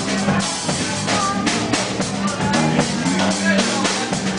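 Live blues band playing an instrumental passage: a drum kit keeps a steady beat under a sustained electric bass line.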